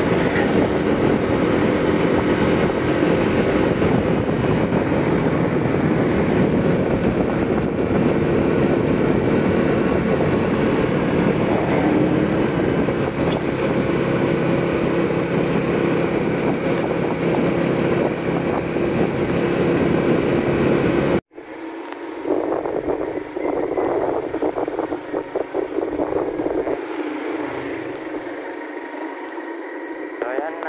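Motorcycle engine running steadily under way, mixed with rushing wind and road noise. About two-thirds of the way through, the sound cuts off abruptly and is replaced by a thinner, quieter noise with the low end gone.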